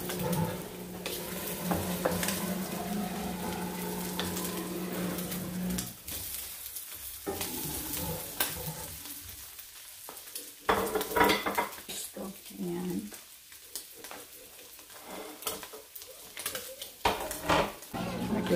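Food sizzling in oil in a nonstick frying pan on a gas burner, with a wooden spatula scraping and tapping against the pan as the pieces are turned, and a few louder clatters. A steady hum runs under the first six seconds.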